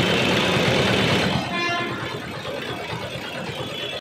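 Busy urban road traffic: vehicle engines, including a tractor and auto-rickshaws passing, with a short horn toot about a second and a half in.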